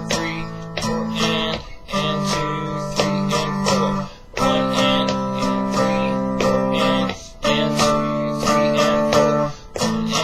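Electric guitar played through an amplifier in a string-bending exercise: notes are bent up and let back down in a repeating phrase over held low chords that change every two to three seconds, with short breaks between phrases.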